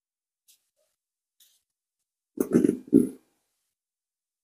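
Two short, rough exhalations muffled inside a full-face respirator with twin filter cartridges, about two and a half seconds in, preceded by a couple of faint ticks.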